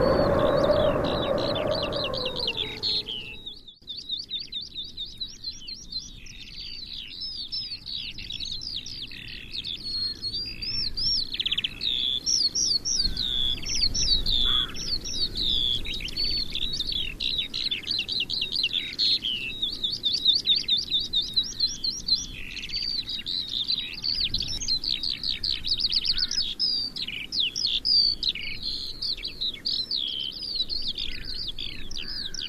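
A dense chorus of small songbirds chirping and trilling, with quick runs of repeated high notes, continuing throughout. At the start a long, low, wavering tone with overtones fades out about three seconds in.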